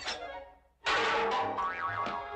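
Cartoon soundtrack: a pitched sound fades out, then after a brief gap a sudden loud comic boing-like sound effect starts just under a second in and rings down with a wavering pitch.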